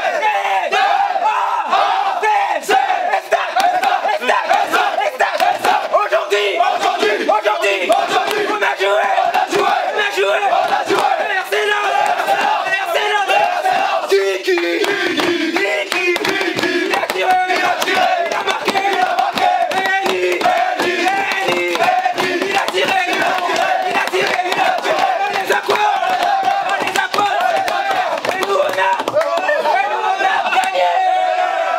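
A group of footballers chanting and shouting together in a dressing room, many voices held loud and steady on a chant, with sharp slaps throughout.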